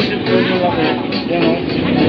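People talking over background music, with steady market and street noise underneath.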